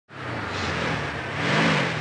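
A car engine revving over a strong rushing noise, its pitch rising and dipping near the end.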